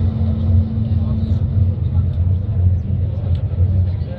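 A deep, steady rumble with faint crowd murmur.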